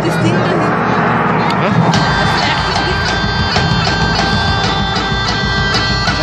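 Crowd chatter, then about two seconds in a live medieval rock band starts up through the PA: bagpipes playing held drone tones and melody over a steady drum beat.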